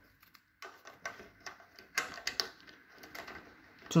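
Faint handling noises with light clicks and scrapes: a fluorescent-tube starter being fitted into its holder on the light fixture.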